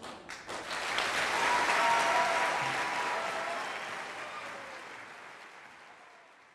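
Audience applause: a few scattered claps that swell into full applause about a second in, then gradually fade away.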